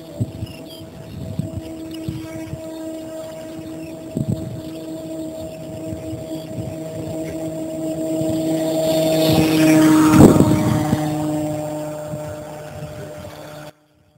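Model tow plane's engine running under load on an aerotow takeoff. It grows steadily louder to a peak as the plane passes close about ten seconds in, then fades, and the sound cuts off abruptly just before the end.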